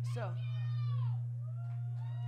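Microphone feedback through the stage PA: a squealing tone that slides down in pitch over about a second, then a second wavering tone near the end, over a steady low electrical hum.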